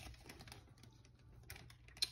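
Near silence broken by a few faint, light clicks: a metal spoon scooping frozen pomegranate seeds.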